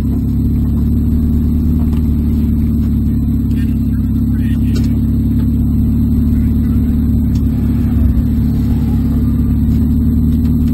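A 1.6-litre Spec Miata's four-cylinder engine idling steadily, heard from inside the caged cockpit.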